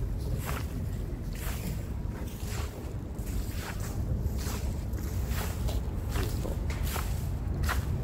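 Footsteps of a person walking with a handheld camera, a soft step about once or twice a second, over a steady low rumble.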